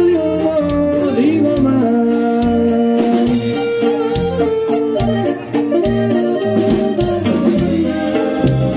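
A live band playing Latin music: long held accordion and saxophone notes over guitars and a steady drum kit beat.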